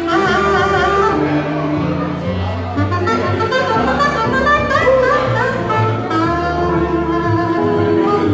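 Bamboo saxophone (Goldstar Bamboosax) and violin playing a jazz tune together, the reedy wind melody weaving over the bowed violin, with a low bass line underneath.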